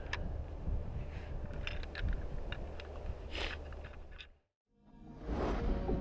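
A steady low rumble with scattered clicks and rustles in the open air cuts off to a moment of silence about four and a half seconds in. Then a swelling whoosh rises into the hunting show's bumper music.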